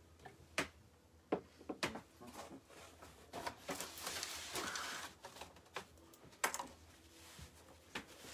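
Scattered light clicks and taps of small objects being handled on a table, with a longer scratchy rustle about four to five seconds in.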